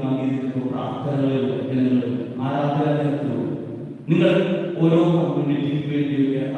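A man's voice singing a slow, chant-like melody in long held notes, phrase after phrase, with a short breath about four seconds in.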